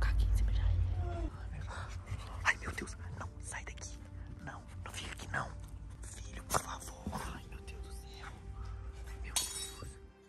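Heavy rubbing and rustling on a handheld phone's microphone for about the first second, then scattered small clicks and scrapes as a small dog scrambles over the person holding the phone and is pushed away. Soft whispering comes in between.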